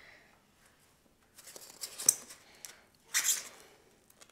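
Pieces of rigid foam insulation glued with Foam Fusion being twisted and pried apart by hand. The foam creaks and squeaks in short scratchy bursts, a softer one about halfway and a louder, sharper one near the end, as the glued joint holds.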